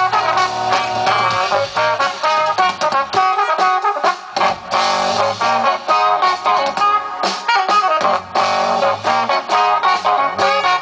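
Live band playing an instrumental passage: trombone and saxophone horn lines over electric guitar, bass and drum kit.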